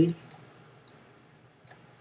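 A few light, sharp clicks, spaced irregularly, from a stylus pen tapping on a drawing tablet while handwriting.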